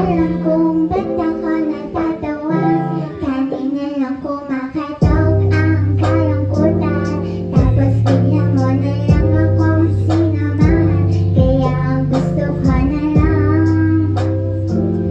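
A young woman singing a slow song live into a microphone over instrumental backing. About five seconds in, a deep bass part comes in and the music gets louder.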